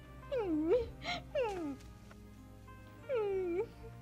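A woman crying: four wavering, pitched sobs that mostly fall in pitch, three in the first two seconds and one about three seconds in. Soft sustained background music plays underneath.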